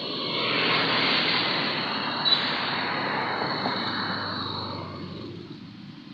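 A rushing noise that swells, holds for a few seconds and fades away about five seconds in, with a short sharp knock a little after two seconds.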